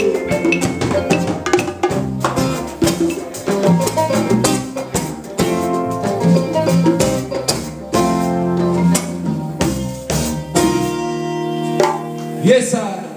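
A live band plays an upbeat groove on drum kit, kora, electric bass and guitars. It closes on a held, ringing final chord in the last second or so.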